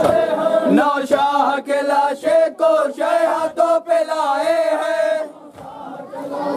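Men chanting a noha, a Shia mourning lament, in a wavering melody with crowd voices around it. The chant breaks off about five seconds in.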